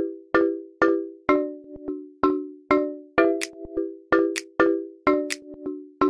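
Logo-animation sound effect: a quick, even series of struck, bell-like chime tones, about two a second, each ringing briefly and dying away before the next.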